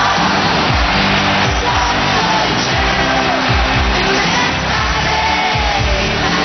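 Pop-rock song with a steady drum beat and singing.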